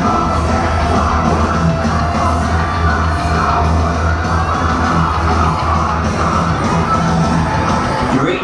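Loud music with a heavy, steady bass line, with some yelling over it.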